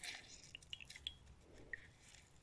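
Faint wet squishing with a few small drips and clicks as herbal tea bags are squeezed by hand in a glass jug of tea.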